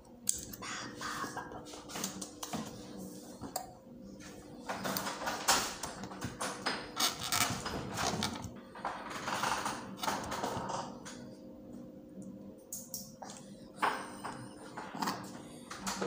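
Fingers working rice in a plastic bowl during hand-feeding: irregular clicks, rustles and scrapes, busiest in the middle, over a faint steady low hum.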